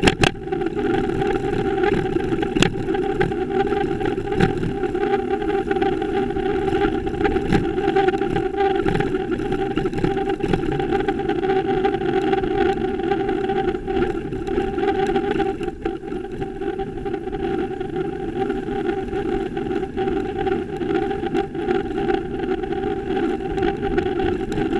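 Steady wind and road noise on a bicycle-mounted camera's microphone while cycling in city traffic, with a steady hum under it and a few light knocks.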